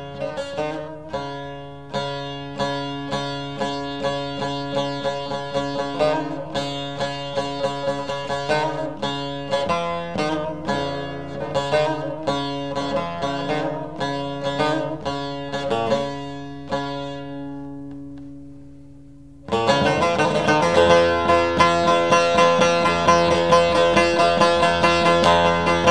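Bağlama (long-necked Turkish saz) playing a fast plucked melody over a steady drone. The notes fade away, then a louder, fuller passage begins suddenly about twenty seconds in.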